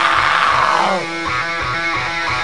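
Live rock band with distorted electric guitars playing loud; about a second in, a falling pitch slide drops into a held chord that rings on steadily.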